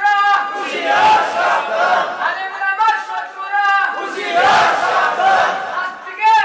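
Men's voices chanting loudly in long, drawn-out melodic phrases, with the sound of a crowd.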